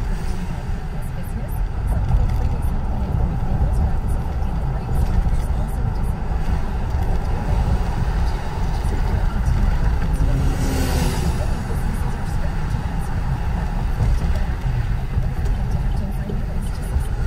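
Road and engine noise inside a moving car's cabin: a steady low rumble, with a brief rush of hiss that swells and fades about eleven seconds in.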